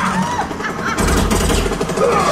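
Loud action sound effects from a 3D ride's soundtrack: a deep rumble, joined about a second in by a rapid rattle of repeated hits.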